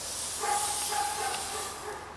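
Planchette sliding across a ouija board under the sitters' fingers: a soft, steady scraping hiss. A faint high tone hangs in the background from about half a second in.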